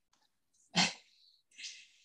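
A woman's short breathy chuckle about a second in, then a quick intake of breath just before she starts to speak, with near silence around them.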